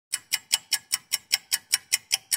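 Clock-ticking sound effect: quick, evenly spaced ticks, about five a second, starting just after a silence. It accompanies an animated clock to mark time passing.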